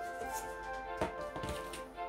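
Background music with steady held notes. A couple of light taps come about a second in, from hands handling paper cups on a poster board.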